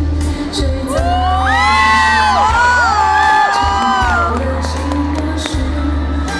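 Live ballad accompaniment of piano and orchestra in a concert arena, with several audience members' high cheers and whoops rising over it for a few seconds in the middle.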